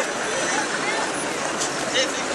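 Voices over a steady, noisy background, with a few faint clicks near the end.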